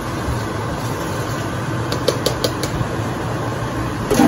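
Steady fan noise with a low hum, from a kitchen vent fan over the stove, with a few light clicks about two seconds in.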